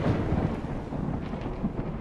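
Rumbling, thunder-like sound effect of a logo animation, slowly fading.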